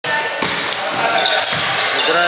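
Basketball bouncing on a wooden gym floor, a few short thuds about half a second apart, over chatter echoing in a large sports hall.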